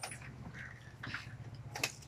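Snack chips being handled in a tin canister: a few faint clicks and rustles, the sharpest near the end, over a steady low hum.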